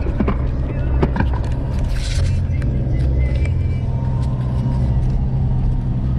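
Inside the cab of a 4x4 driving on a sand and dirt track: steady deep rumble of engine and tyres, with scattered knocks and rattles from the rough ground.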